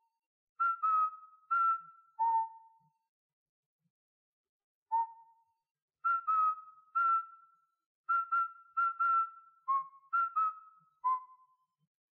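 A slow whistled tune of short, separate notes moving among a few pitches, each note starting cleanly and trailing off with a slight waver, in two phrases with a pause between them.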